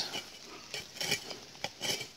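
A few faint, light clinks and clicks at uneven intervals, old dug-up iron nails handled and knocked together, with a little rustling.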